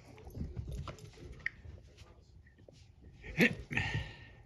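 A small dog making short vocal sounds while playing, with small scattered noises early on and two louder short sounds near the end.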